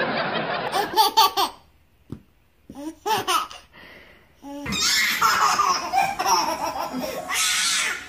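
A baby laughing in repeated bursts.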